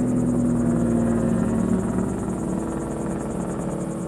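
Engine of a passing motor vehicle, a steady hum that dips slightly in pitch and fades as it moves away.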